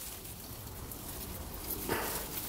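Faint rustling of peach-tree leaves and twigs as a hand reaches in among the branches to pick a peach.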